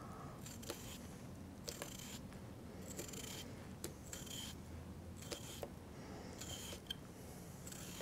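Small turning knife paring thin strips off a raw potato: a series of faint, short slicing scrapes at an irregular pace of roughly one a second.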